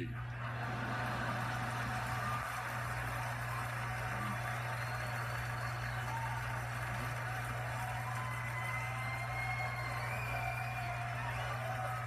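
Live theatre audience laughing and applauding at length in reaction to a stand-up punchline, heard through a television's speaker, with a steady low hum underneath.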